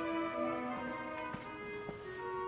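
Orchestral music playing from a recording: slow, overlapping held notes, with two faint ticks in the second half.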